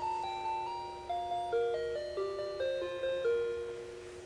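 Children's musical clown wall clock playing one of its built-in melodies, a simple tune of clear, chime-like single notes that ends on a held note near the end.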